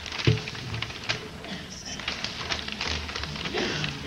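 Rustling and crackling of large paper plan sheets being handled, with irregular small crackles throughout.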